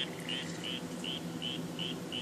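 Tiny earbud speaker from cheap headphones playing a sound clip from a phone: a faint, evenly repeating run of short high chirps, about three a second. It is barely audible, too weak to serve as a model car's speaker.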